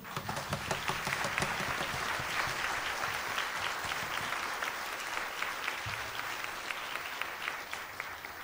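Audience applauding, a dense patter of many hands clapping that starts at once and slowly thins out near the end.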